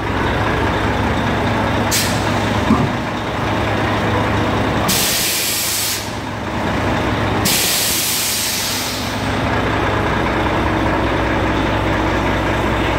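Volvo FH 540 truck's diesel engine idling steadily, with loud hisses of compressed air from its air suspension as the ride height is adjusted. There is a short hiss about two seconds in, then two longer ones of a second or more each near the middle.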